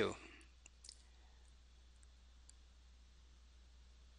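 A few faint computer mouse clicks, scattered over the first two and a half seconds, over a low steady hum.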